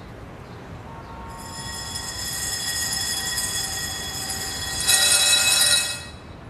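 A sustained high, metallic squeal made of several steady tones, like train wheels on a rail. It builds over the first seconds, swells much louder about five seconds in, then stops abruptly.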